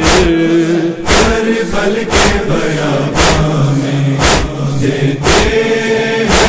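A chorus chanting a noha in long held tones without words, over a steady beat of matam chest-beating strikes about once a second.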